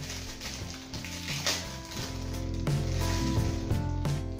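Crinkling and rustling of a clear plastic packet being handled, over background music with steady low held notes.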